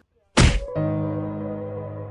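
A single heavy cinematic impact hit strikes out of dead silence about a third of a second in, then gives way to a sustained, steady musical drone chord that slowly fades.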